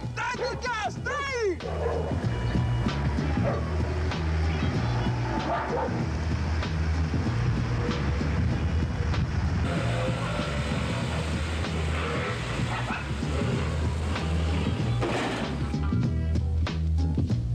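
Background music with a steady, repeating bass beat. A man's voice, calling out several times, sounds over it in the first second or so.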